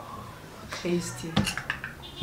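A few light clinks of tableware on the table: one at the start and two close together about a second and a half in, with low speech in between.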